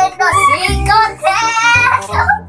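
A song: a high voice singing long held notes, in two phrases, over a backing track with a steady low bass.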